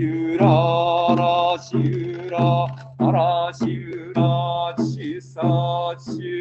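A priest's voice chanting a Buddhist sutra in Japanese, on a near-level pitch in short phrases with brief pauses between them, in Soto Zen service style.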